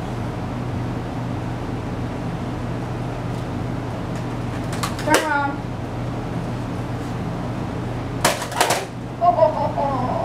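Nerf blaster firing foam darts: a shot with a short vocal cry about five seconds in, then a quick cluster of sharp clicks and snaps a little after eight seconds, over a steady low room hum.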